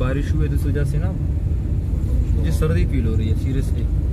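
Steady low rumble of a car on the move, heard from inside its cabin, with a man talking over it in two short stretches.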